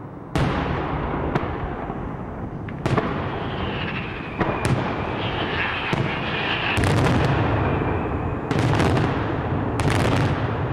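Daytime fireworks: aerial shells bursting overhead in loud bangs over a continuous rumble of further bursts. The reports come singly a second or so apart at first, then in rapid clusters in the second half.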